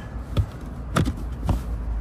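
Three dull thumps about half a second apart as a hand presses and pats the carpeted side-compartment cover in a BMW 2 Series Gran Coupé's boot back into place.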